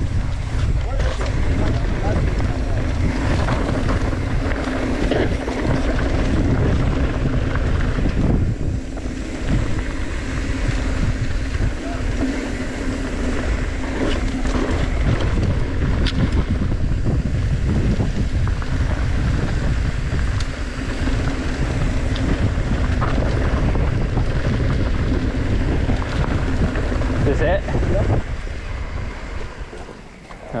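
Wind rushing over the camera microphone while a mountain bike rolls fast down a dirt trail, with tyre noise and scattered rattles and clicks from the bike, and a steady low hum underneath. It eases off near the end as the ride slows.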